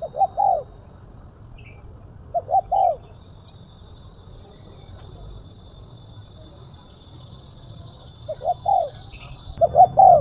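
Spotted dove cooing in short phrases of three or four quick arched notes, heard four times: at the start, about two and a half seconds in, and twice near the end.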